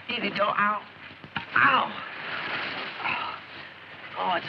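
A man's voice in short bursts over the soundtrack's steady hiss.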